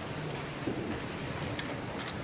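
Audience noise in a large gymnasium: a steady hiss of rustling and low murmur, with a few light clicks near the end.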